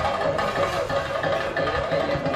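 Fast, continuous percussion music: the chenda drumming and cymbals that accompany a theyyam.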